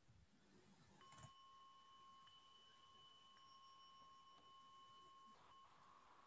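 A bell struck faintly about a second in, ringing with two steady tones, one low and one higher, for about four and a half seconds.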